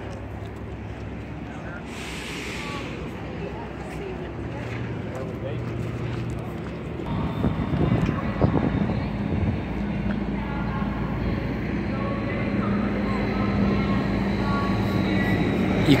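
An engine running with a steady low hum that grows louder over the second half, with faint voices in the background.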